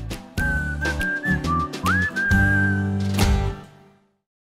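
Music with a whistled melody over a steady, sustained backing, ending with a sharp click just after three seconds and fading out to silence.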